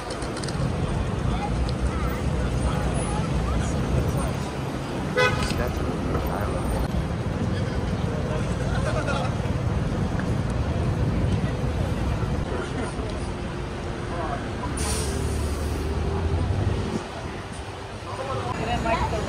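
City street traffic with passers-by talking, under a steady low rumble of engines. A short horn toot sounds about five seconds in, and a brief hiss comes near the end as a heavier engine runs close by.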